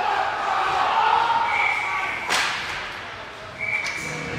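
Ice hockey game in an indoor rink: a murmur of voices, a referee's whistle blown twice as a steady high tone, and a single sharp crack just after the first blast, about halfway through.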